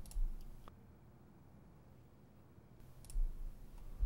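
Computer mouse clicks picked up by a desk microphone, each with a dull low thump: one or two right at the start and another pair about three seconds in.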